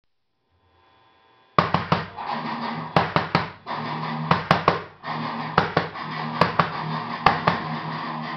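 Music: an electric guitar strumming chords, starting abruptly about a second and a half in after a faint tone, with hard stabs in groups of two or three over a ringing chord.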